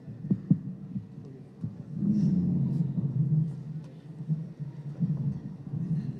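Low, muffled thumps and rumble picked up by a stage microphone as people settle at the lectern and table: a few thuds about half a second in, then a low rumble with faint murmuring from about two seconds on.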